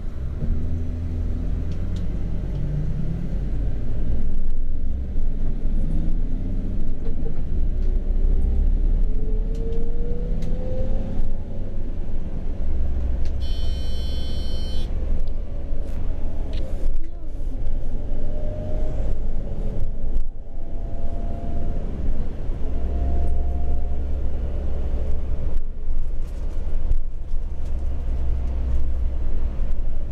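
City bus engine and drivetrain heard from inside the passenger cabin: a steady low rumble, with a faint whine that rises in pitch as the bus gathers speed. A brief high tone sounds about halfway through.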